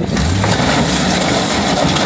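Lifted Jeep's engine revving hard under load as it climbs over a junk car, the car's body crunching under its tyres. The sound swells just after the start and stays loud.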